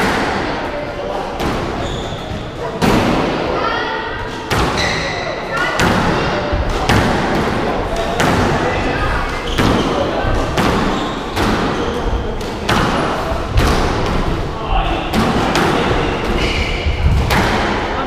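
A squash rally: the ball struck by rackets and smacking off the walls of the court in a fast, irregular series of sharp hits with a hall-like echo, mixed with short high squeaks of shoe soles on the wooden floor.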